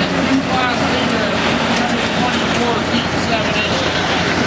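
Diesel engines running steadily, with people's voices talking over them.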